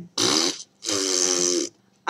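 A woman's breathy, voiced sigh: a short breath in, then a longer breath out from about a second in.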